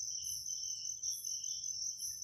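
Faint high-pitched chirping that pulses softly, over a steady thin high whine; insect-like, with no handling or metal-on-metal noise.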